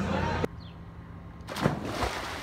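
Someone jumping into a swimming pool: one sudden splash about one and a half seconds in, followed by churning water. Before it, a short tail of bar noise cuts off abruptly.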